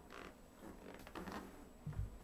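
Faint creaking and rustling as a seated person turns around on a leather chair.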